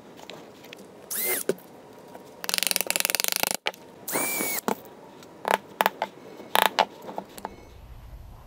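Cordless drill run in three short bursts into the corner of a small wooden frame, the middle burst a fast ratcheting clatter and the last a steady motor whine. A few sharp knocks of wood being handled follow.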